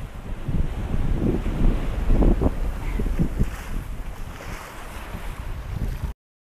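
Strong wind buffeting the microphone in gusts over the rush of breaking waves, the gusts loudest about two seconds in.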